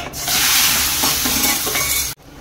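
Turmeric-coated boiled eggs tipped into hot oil in a kadai, the oil sizzling loudly as they land, starting a moment in.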